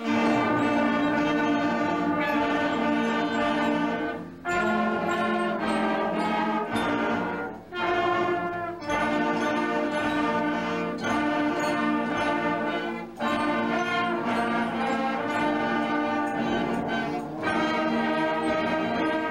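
A school instrumental ensemble starts its final piece, coming in together on a loud first chord. It plays held chords in phrases, with short breaths between them about every four seconds.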